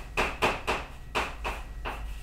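Chalk on a blackboard as numbers are written: a quick run of short taps and scrapes, about eight in two seconds.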